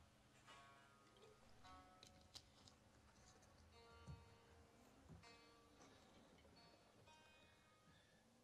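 Very faint plucked guitar notes, a few separate notes that ring and fade.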